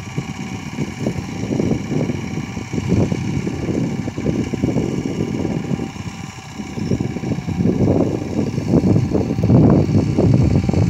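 Small engine of a distant self-propelled wheat reaper running steadily, overlaid by a gusty rumble of wind on the microphone that grows stronger near the end.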